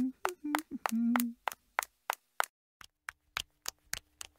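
Cartoon sound effects of quick clicking footsteps as animated characters walk on. The first second and a half has a few short pitched blips among the clicks; after a brief gap comes a faster, even run of clicks, about five a second.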